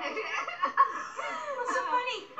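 Sitcom studio-audience laughter, many voices laughing at once, played through a television's speaker.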